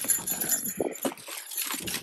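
Hands rummaging through a cardboard box of packaged merchandise: irregular rustling and light clicks of items and packaging being shifted.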